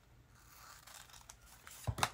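Small scissors quietly snipping through a paper sticker sheet, followed by a single short knock near the end.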